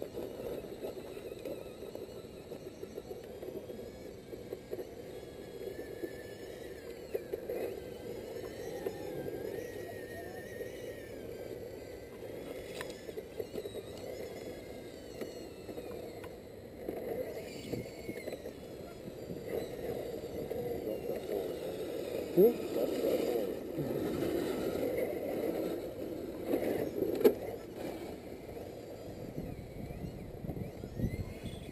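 Small electric motor and gears of a radio-controlled scale crawler truck whining, the pitch rising and falling with the throttle as it creeps up a near-vertical dirt bank. Two sharp knocks come in the second half, and a person exclaims.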